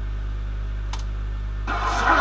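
A steady low hum, with a single sharp click about a second in. Near the end, music comes in.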